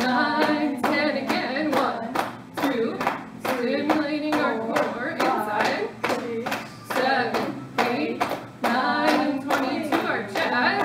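Palms tapping rhythmically on the lower belly, about three slaps a second, with voices sounding over the taps.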